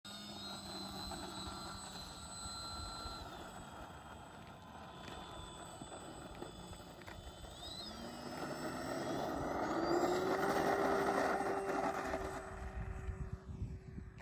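Foam-board radio-controlled model airplane's motor and propeller throttling up for takeoff: a whine that rises in pitch about eight seconds in, holds steady at its loudest, then fades as the plane moves away. Wind noise sits underneath.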